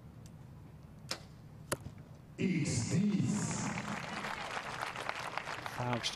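A compound bow shot: two sharp clicks about half a second apart, the release firing and the arrow striking the target. Under a second later a sudden loud swell of voices and crowd noise follows.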